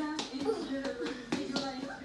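Several voices talking, played through a television's speakers, with a few sharp claps among them.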